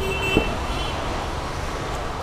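Rear door of a Jaguar XF being pulled open by its handle, with a single faint latch click about half a second in, over a steady background hum of road traffic.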